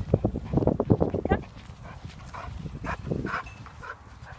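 Pit bull mix scuffling up close to the phone: a fast run of short thumps for about the first second and a half, then quieter movement.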